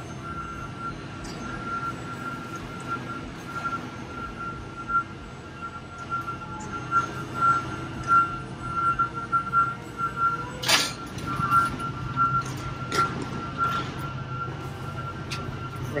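A truck running with a steady low hum while a backup alarm beeps repeatedly at one high pitch, with a single sharp knock about eleven seconds in.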